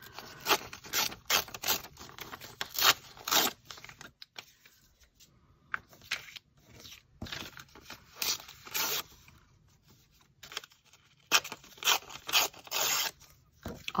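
Painted paper being torn by hand in a series of short rips, coming in runs with brief pauses between them as the edge is worked around.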